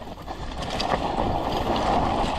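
Mountain bike riding fast down a dry, loose, dusty dirt trail: a steady rush of tyre and bike-rattle noise that builds over the first second.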